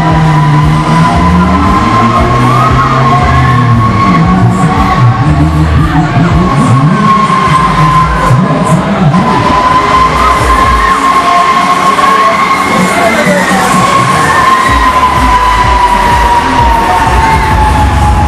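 Huss Break Dance fairground ride running: loud ride music with a steady whine that slowly rises and falls in pitch, and riders cheering and shouting.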